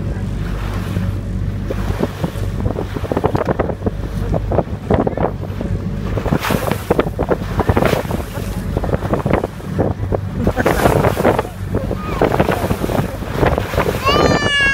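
A small boat's engine droning steadily under dense, irregular splashing of water against the hull, with wind buffeting the microphone as the boat moves across choppy sea.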